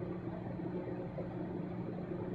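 A steady, low background hum of room tone, with no distinct sounds standing out.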